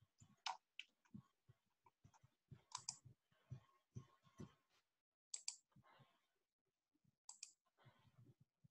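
Near silence with faint, irregular clicking at a computer, a few sharper clicks among softer taps.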